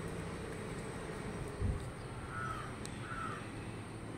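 A low thump, then a bird cawing twice, about a second apart.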